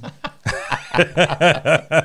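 Men laughing in a run of short chuckles, about five quick pulses a second, mostly in the second half.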